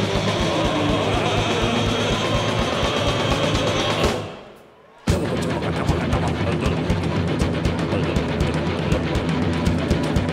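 Live rock band playing: electric guitars, bass and drum kit with a steady beat. About four seconds in the band stops together and the sound rings away for about a second, then the whole band crashes back in at once.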